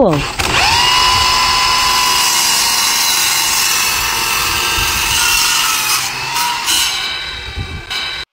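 A cordless drill, its bit on the miter saw's arbor bolt, spins the saw blade up and drives it in place of the saw's own motor, giving a steady high whine. In the last two seconds the sound turns uneven and the whine briefly rises again.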